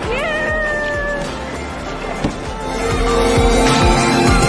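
Background music. Near the start a pitched note slides up and is held for about a second.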